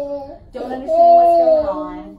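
Toddler crying in long, drawn-out wails: one ends just as the sound begins, and another starts about half a second in and lasts over a second. She is groggy and upset, coming round from general anaesthesia after ear tube surgery.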